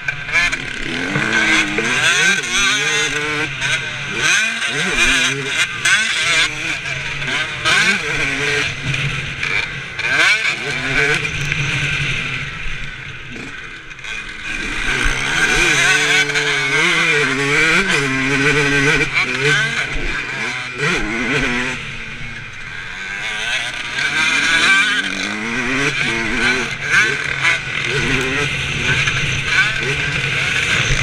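Motocross bike engine running under the rider, revving up and dropping back again and again through the laps. The revs and loudness fall away twice, about halfway through and again past two-thirds in.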